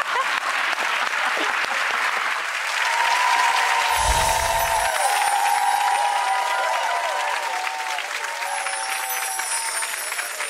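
Studio audience applauding steadily, with a brief low boom about four seconds in.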